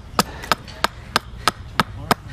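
Gränsfors large carving axe chopping into a green walnut spoon blank braced upright on a chopping block: quick, even strokes about three a second, six in all.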